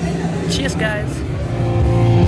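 Loud rock music from a band, guitar-led, with a person's voice briefly over it in the first second.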